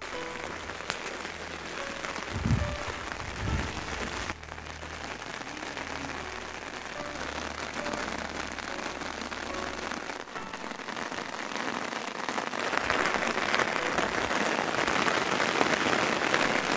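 Heavy rain falling steadily, growing louder in the last few seconds. Two low thumps come between two and four seconds in.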